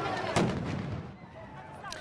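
A sudden loud bang, then a second sharp crack about a third of a second later, followed by a noisy din that fades over the next second.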